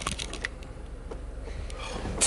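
A few sharp clicks and light rustling from handling around a car's open plastic center console and the tissue and paper inside it, most of the clicks in the first half second.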